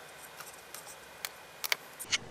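Faint handling noise from a taped splice of insulated wires: a few small sharp clicks, two of them close together near the end.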